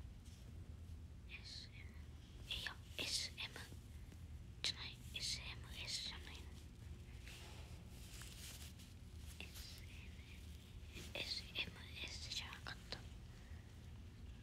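A person whispering in several short phrases with pauses between them, over a steady low hum.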